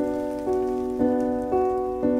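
Solo piano playing an even pattern of notes, about two a second, over a held low note.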